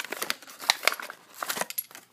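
Plastic blister pack on a Hot Wheels card being cracked and pulled open by hand: a run of sharp plastic crackles and snaps, with cardboard tearing.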